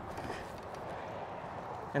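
Steady, even hiss of wind and choppy water around a boat, with no distinct events.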